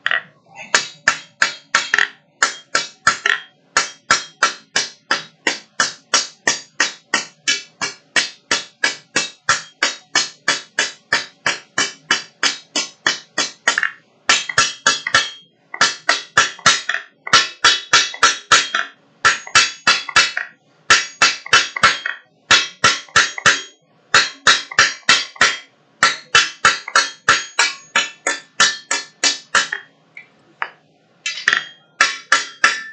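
Hand hammer striking a red-hot steel bar on an anvil at about three blows a second, each blow ringing sharply; the steady run breaks into shorter bursts with brief pauses about halfway through.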